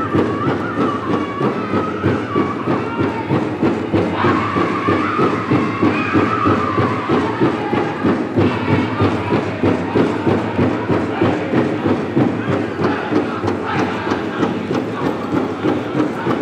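Powwow drum group: several singers in high-pitched unison over a large hand drum beaten in a steady, fast rhythm, the dance song for a Women's Fancy Shawl contest. The singing is strongest in the first half.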